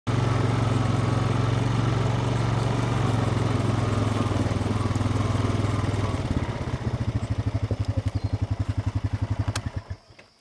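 A four-wheeler ATV engine running as the ATV rolls along. About six seconds in it drops to an even, pulsing idle, and it stops just before the end.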